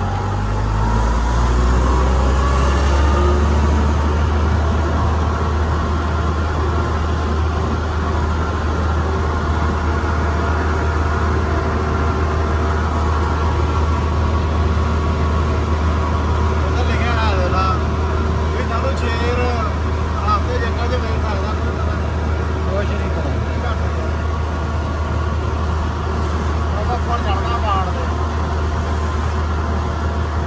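Combine harvester's diesel engine running under way on the road, a steady low drone heard from the driver's seat; its note climbs over the first couple of seconds as it picks up speed.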